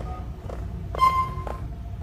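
Steady low hum of a transit vehicle's cabin standing at a stop, with a single electronic beep about halfway through that lasts about half a second, between two light knocks.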